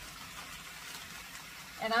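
Shrimp frying in butter and oil in a skillet, a steady sizzle, as cut okra is poured in from a bag.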